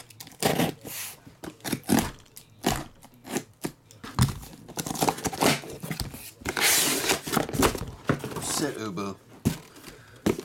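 Cardboard shipping case being opened: packing tape slit and torn and the flaps pulled back, with knocks and scrapes of cardboard being handled and a longer tearing rip about seven seconds in.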